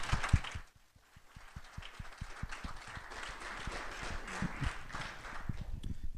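Audience applause, a dense patter of many hands clapping, with a brief lull about a second in. A few low thumps sound in the first half second.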